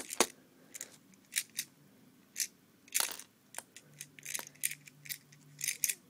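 Plastic Lego bricks and tiles clicking against each other and the baseplate as pieces are pulled off by hand: a series of short, irregular clicks.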